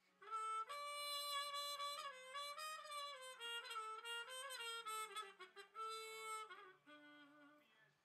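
Trumpet played through a Yamaha Silent Brass practice mute, giving a faint, heavily muted tone. It plays a short melodic phrase of connected notes that stops about six and a half seconds in. The mute is the one that cuts the most volume.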